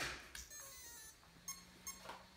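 An RC truck's electronics switched on, giving short, faint electronic beeps, two of them close together near the end, over a faint steady low hum.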